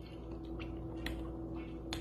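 A few faint mouth clicks and lip smacks from someone tasting hot sauce off a spoon, over a steady low hum.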